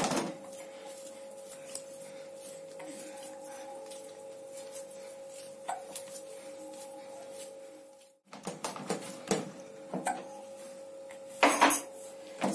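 Chapati dough being kneaded by hand in a plastic basin: soft slaps and knocks of dough against the basin, with a louder thump near the end as the dough is put back down into it. A steady faint hum runs underneath.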